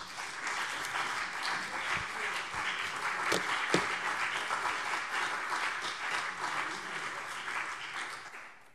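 Applause from the parliamentary chamber at the end of a speech: many people clapping steadily, dying away at the end.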